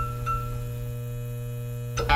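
Steady electrical hum of a neon-sign sound effect: a low buzz with a thin higher whine over it, holding an even level until it cuts off at the end.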